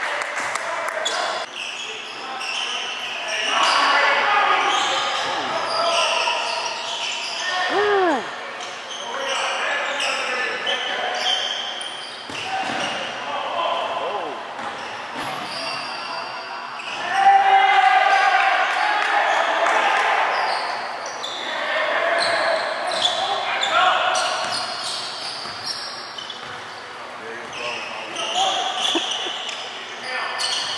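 Basketball game on a hardwood gym court: a ball bouncing, sneakers squeaking in quick short glides, and indistinct calls from players and spectators, all echoing in the gym.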